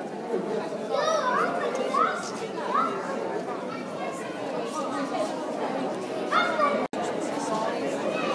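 Indistinct chatter of several visitors talking in a large, echoing gallery hall, with one voice rising and falling more clearly about a second in. The sound cuts out for an instant near the end.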